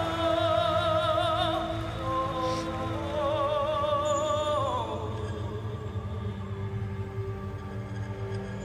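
A male singer holding long notes with wide vibrato over a backing track, the line gliding downward about four and a half seconds in, after which the accompaniment carries on more quietly.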